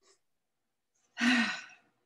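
A person sighing once about a second in: a short, breathy voiced exhale that fades away.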